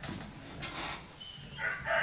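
Marker writing on a whiteboard: a few short scratching strokes and a brief high squeak. A voice starts just before the end.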